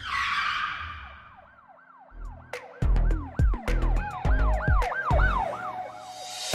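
Intro music in a hip-hop style: a siren-like wail repeating in quick rising-and-falling sweeps, about three a second. It opens with a whoosh that fades over the first second or so. From about two seconds in, heavy bass-drum hits and sharp clicks come in under the sweeps.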